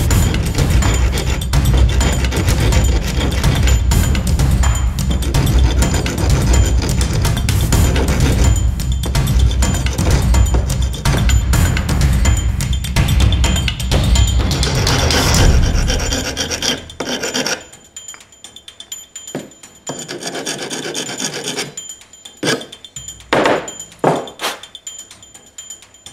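Hand-held abrasive block rubbed back and forth in quick, continuous strokes, stopping about two-thirds of the way through, followed by a few short scrapes near the end.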